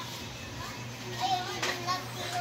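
Young children's high voices calling and chattering in short snatches, over a steady low hum.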